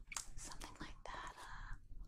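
A woman whispering softly, breathy speech with no voiced tone, between stretches of her normal speaking voice.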